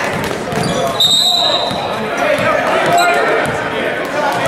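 A referee's whistle blows a steady shrill blast about a second in and a short toot near the end, over the voices of a crowd in a gymnasium. A basketball bounces on the hardwood floor.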